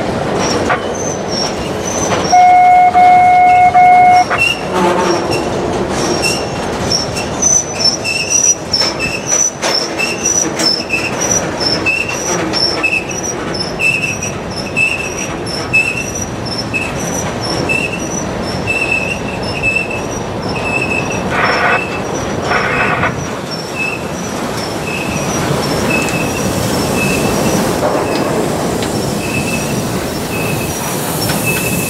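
Freight cars rolling past a grade crossing, wheels clicking over the rail joints, while the crossing bell rings steadily about twice a second. A loud horn blast of about two seconds sounds near the start.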